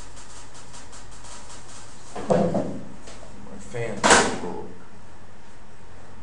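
A man's voice in two short untranscribed vocal sounds, about two and four seconds in, the second the louder. Faint clicking in the first second and a half, over a steady low hum.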